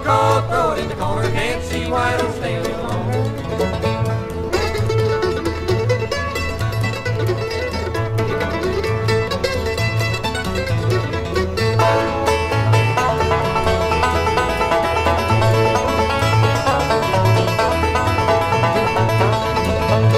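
Bluegrass instrumental break with no singing: a five-string banjo plays lead over flat-picked acoustic guitar rhythm with a steady pulse of bass notes, mandolin in the band as well. The playing changes about twelve seconds in.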